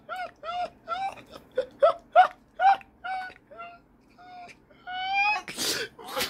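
A person's voice in a rhythmic run of short, high-pitched cries, about three a second, that thins out and trails into a longer drawn-out cry, ending in a loud breathy burst of breath.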